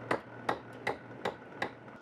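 Small hammer striking a steel chisel into a slab of Nampo black stone, five sharp, evenly spaced taps, about two and a half a second: the chisel is cutting stone away along the traced outline of an inkstone.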